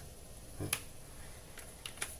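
A few short, faint clicks in a quiet room: one sharper click about a third of the way in, then two fainter ones near the end.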